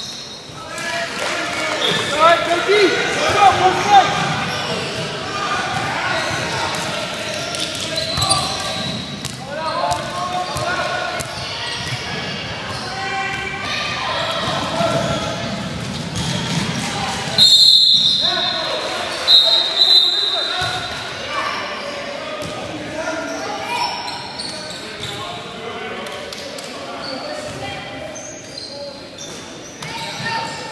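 Youth basketball game in a large gym: the ball bouncing on the hardwood court, with unclear voices of players and spectators throughout. A referee's whistle blows twice a little past the middle.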